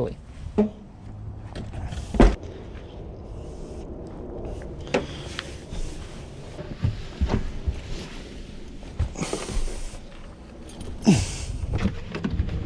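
Knocks, bumps and rustling from someone shifting and climbing around inside a Mazda5 minivan's cargo area and cabin, with one loud thump about two seconds in.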